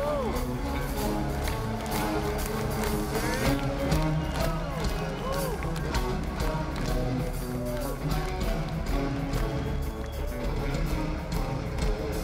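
Live electric guitar lead with repeated string bends, notes pushed up and let back down, over a rock band's drums and bass, heard from the audience in a large arena.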